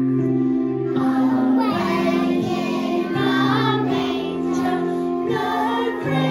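Young children singing a song together over a sustained electric keyboard accompaniment; the keyboard chords are alone at first and the voices come in about a second in.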